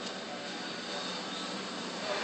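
Steady background noise of a gym, an even hum with no distinct events.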